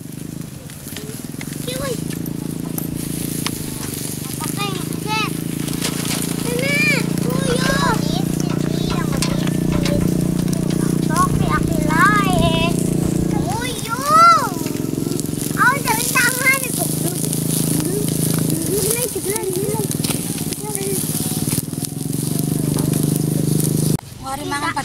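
Chicken grilling over a small wood fire, sizzling and crackling, under children's voices calling out. A steady low hum runs underneath.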